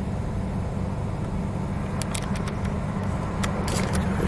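A car's engine idling, a steady low hum heard from inside the cabin, with a few sharp clicks in the second half.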